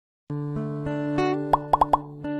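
Intro jingle music with sustained notes starting about a quarter second in, then four quick rising plop sound effects near the end.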